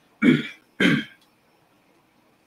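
A man clearing his throat twice, two short rough bursts about half a second apart.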